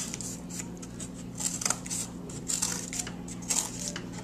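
Scissors snipping short slits into the edge of a sheet of cardboard: a series of short, crisp cuts about half a second apart.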